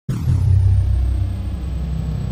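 A loud, deep rumbling drone that starts abruptly, with a short hiss at the onset that fades away; it is a low sound effect laid under the opening title card.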